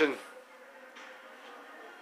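Faint steady hum with a thin held tone, just after a man's voice trails off.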